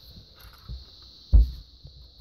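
Handling noise from a large plastic Lego model held and moved in the hand, with one dull thump a little over a second in.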